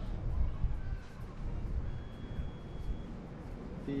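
Waydoo Flyer One Plus efoil board's electronics sounding its start-up tones, a happy jingle on power-up, with a thin high steady beep lasting about a second near the middle, over a low outdoor rumble.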